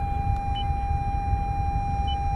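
A steady mid-pitched electronic tone sounds continuously inside a 2019 Toyota RAV4's cabin while the car is in reverse, with one short high beep about half a second in, over a low rumble from the vehicle.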